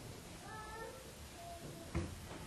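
A faint, brief high-pitched cry lasting about half a second, with a fainter short tone a second later. A soft thump follows near the end.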